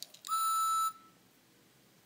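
Single short electronic beep, about two-thirds of a second long, from the small speaker of a talking Edward toy engine (Thomas and Friends die-cast).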